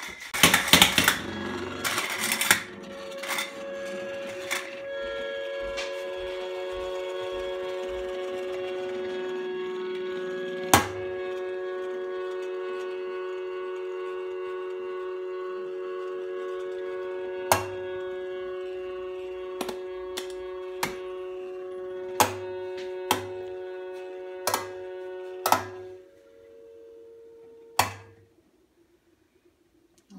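Tin humming top spinning, after a few seconds of clatter at the start, with a steady multi-tone hum that sets in about three seconds in. Occasional sharp clicks cut through the hum. Near the end the top runs down: the hum thins to fewer tones and dies out.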